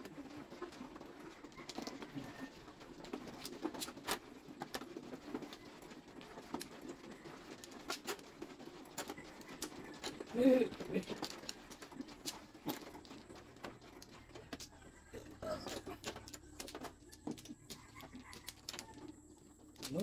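Mahjong tiles clicking and clacking as players draw, arrange and discard them on a felt table: scattered sharp taps throughout. About halfway through, a brief low call stands out as the loudest sound.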